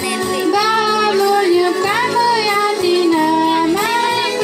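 Young girls singing a melody into a handheld microphone, amplified through a PA system, with steady low accompanying tones underneath.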